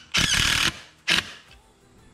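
Cordless impact driver driving a 1.5-inch screw through a steel drawer glide rail into wood: a loud burst of about half a second, then a short final blip about a second in.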